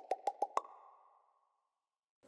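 A rapid, even run of sharp clicks, about seven a second, that stops about half a second in and fades out, leaving silence.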